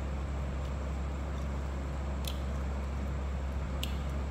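A person chewing food over a steady low hum, with two short clicks, one about two seconds in and one near the end.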